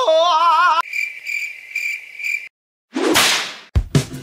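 A drawn-out, wavering vocal "oh" ends under a second in. It gives way to a cricket-chirping sound effect, a steady high chirp pulsing a few times a second, which stops suddenly. After a brief silence comes a whoosh with a thump near the end, a transition effect.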